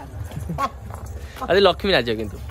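People's voices talking, loudest near the end, over a steady low background rumble.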